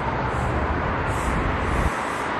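Steady hiss of road traffic, with a low rumble that cuts off abruptly near the end.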